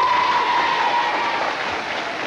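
Studio audience of children applauding, with a long high held note, a whoop or whistle, riding over the clapping and fading near the end.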